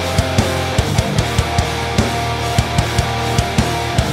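Heavy metal demo mix: a distorted Ibanez seven-string guitar tuned to drop G, through a low-output DiMarzio seven-string pickup, playing a low riff of held notes over drums, with quick, regular drum hits about every fifth of a second.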